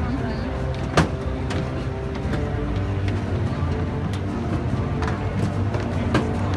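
Live orchestra playing slow, sustained low chords, heard from the audience through the arena's sound system. A single sharp click comes about a second in.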